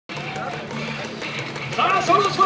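Baseball stadium crowd, many voices at once, with a public-address announcer's voice coming in loud near the end as the starting lineup announcement begins.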